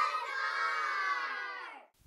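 A group of young children shouting together in unison, stretching the last word into one long held call that slowly falls in pitch and fades out near the end.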